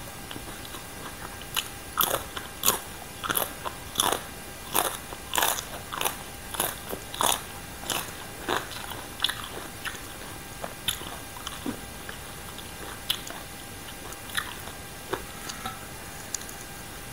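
Close-up crunching as raw green vegetable stems and green papaya salad are bitten and chewed. Sharp crisp crunches come about twice a second for several seconds, then thin out to occasional ones.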